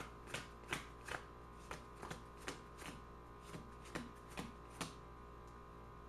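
Playing cards dealt one at a time from the hand onto a pile on a wooden table: a dozen or so soft card slaps, a little under three a second, stopping about five seconds in. A faint steady hum runs underneath.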